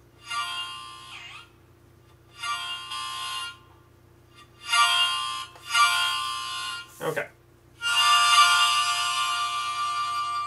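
Korg Volca Sample playing back harmonica samples recorded through a phone's microphone: four short harmonica chords of about a second each with gaps between, the first bending down in pitch, then a longer held chord from about eight seconds in.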